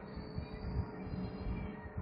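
Cut end of a cucumber rubbed back and forth against the cut face with a little salt, a faint wet rubbing; this draws out the bitter sap.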